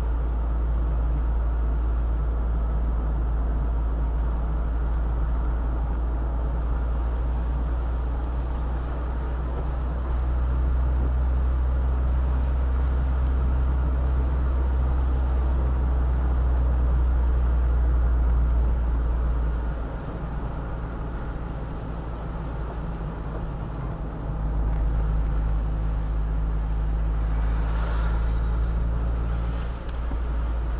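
Steady low drone of a car driving on a wet road, heard from inside the cabin, easing off for a few seconds about twenty seconds in and then picking up again. A brief hiss rises and fades near the end.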